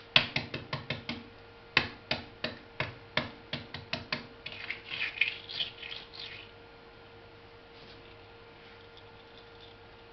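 Shell of a hard-boiled egg being cracked: two quick runs of sharp taps, then about two seconds of crackling as the shell breaks up.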